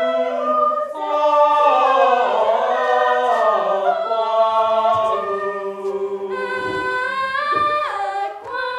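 A small group of male and female voices singing a cappella in harmony, a chant-like choral piece of long held notes; a higher voice comes in brightly about six seconds in.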